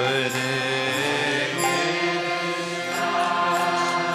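Devotional kirtan chanting: a lead male voice chanting a mantra over sustained harmonium chords, his voice sliding up in pitch at the start.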